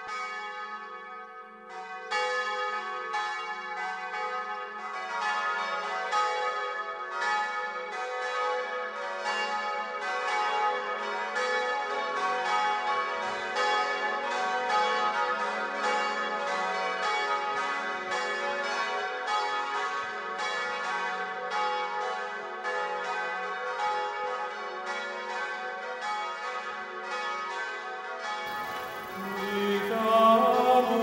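Church bells ringing a peal: overlapping strikes about two a second, each leaving a long ringing tone, growing fuller about two seconds in. Near the end the bells give way to other music.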